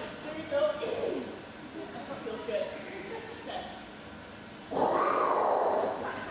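A woman imitating an animal call into a microphone: a loud, rough, noisy cry that starts suddenly near the end, after a quieter stretch.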